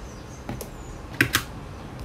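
A few light clicks: a faint one about half a second in, then two sharper ones in quick succession just past a second in, over a low steady hiss.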